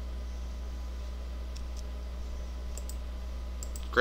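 A few faint clicks from a computer mouse and keyboard over a steady low hum, the clicks coming mostly near the end.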